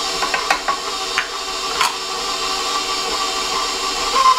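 KitchenAid stand mixer running steadily with its flat beater, creaming butter, sugar and egg in a steel bowl. A few sharp clicks come in the first two seconds.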